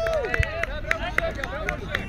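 Several quadball players shouting and calling out over one another during play. A run of sharp clicks is heard through the voices.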